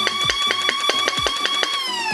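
Flywheel motors of a 3D-printed dual-barrel foam-dart blaster spinning up to a steady high whine, with a rapid series of shots about seven a second as the solenoid pusher feeds darts. Near the end the firing stops and the whine winds down in pitch. An electronic music beat plays underneath.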